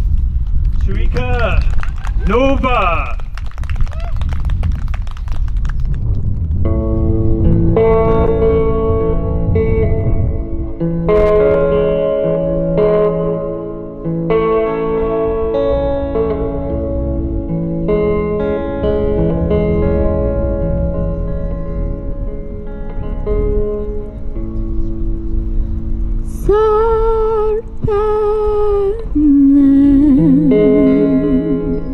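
A voice briefly at the start, then an electric guitar playing slow, held chords that change every second or two. Near the end a woman's voice sings long notes with vibrato over the guitar.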